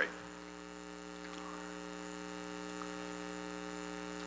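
Steady electrical mains hum in the microphone and sound system: a low buzz made of several steady tones, with nothing else standing out.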